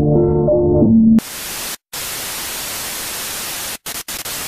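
Sustained musical chords cut off abruptly about a second in, replaced by loud television static hiss that drops out briefly a couple of times.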